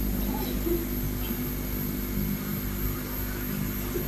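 A steady low hum made of several held tones, over faint even hiss, with no distinct events.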